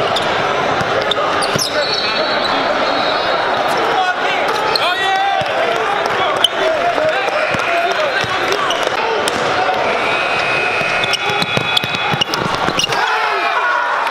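Gym game sound at a basketball game: a crowd chattering, a basketball bouncing on the hardwood, and a few brief high squeaks of sneakers on the court.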